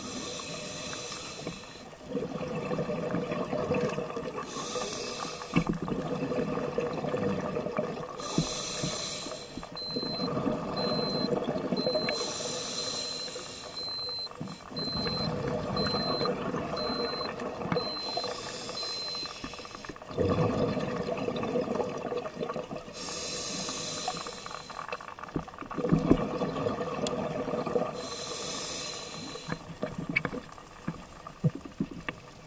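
Scuba diver breathing through a regulator underwater: each inhale a brief hissing rush, each exhale a longer bubbling rumble, about one breath every four to five seconds. For several seconds in the middle, a faint high beep repeats about once a second.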